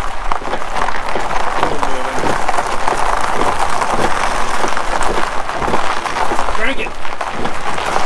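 Gravel crunching and crackling steadily under the tyres of a Pontiac Fiero as it is pushed by hand and rolls along a gravel drive.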